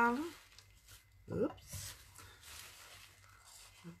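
Faint, soft rustling of a large white sheet as it is lifted and handled.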